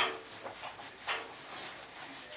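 Soft rustling of a terry towel rubbed over a wet face as it is dried, with a short sharp noise at the very start.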